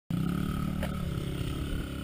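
Small dirt bike's engine running steadily as the young rider climbs the hill, its pitch sagging slowly lower.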